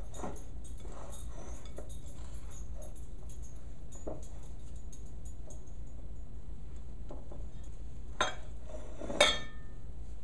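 Hands working sticky pizza dough in a glass mixing bowl, with faint small knocks against the glass over a steady low hum. Near the end come two sharper knocks, the louder one with a short ring, as the glass bowl is moved on the stone countertop.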